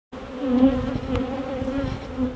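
Honey bees humming en masse on an open hive: a steady buzz with a slightly wavering pitch.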